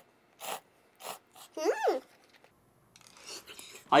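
Instant ramen noodles slurped from chopsticks in three short slurps about half a second apart, followed by a brief hummed "mm" that rises and falls in pitch.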